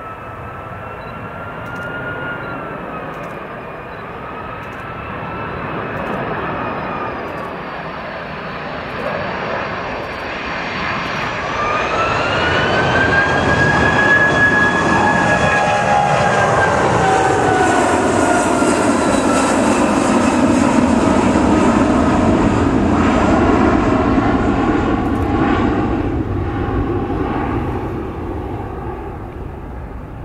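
Boeing 757-200 twin turbofan jet: a steady fan whine at first, then the engines spool up about a third of the way in with a rising whine. A loud jet roar follows with its pitch falling as the aircraft passes, then fades as it climbs away.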